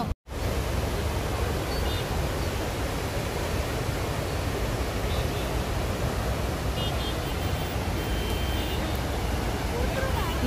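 Steady rushing of the flooded Bagmati River's brown torrent pouring over rocks, a dense, even noise heavy in the low end. It breaks off for a moment just after the start, then carries on unchanged.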